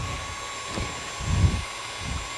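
Tilt-head stand mixer running steadily with a thin high whine, its whisk beating egg whites while fat is spooned in for a buttercream. A soft low thump about one and a half seconds in.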